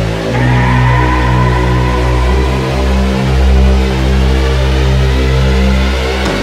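Background music: sustained chords over a deep bass, with a high held tone coming in about half a second in and the chord changing a couple of seconds later.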